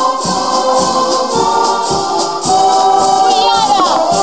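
Philharmonic wind band of brass, woodwinds and percussion playing a piece, with a steady beat about twice a second. Near the end a falling glide in pitch sounds over the band.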